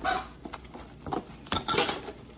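Utensils knocking and scraping against an instant-noodle bowl, a few short clicks with a denser burst of scraping near the end.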